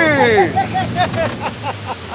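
A man's drawn-out shout falling in pitch, then a quick run of short laughs, over the steady low hum of the boat's engine and the rush of wind and water.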